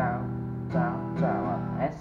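Steel-string acoustic guitar strummed with a pick-less hand, four strong strums about half a second apart with lighter strokes between, letting the chord ring.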